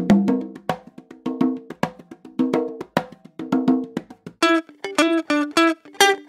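Funk guitar loop of short, choppy muted chord stabs in a steady rhythm. About four seconds in it changes to a brighter, sharper guitar part.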